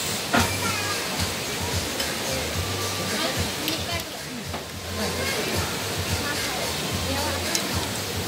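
A metal spoon and fork clinking and scraping on a ceramic plate as rice is eaten, a few sharp clicks among them, over background voices and music.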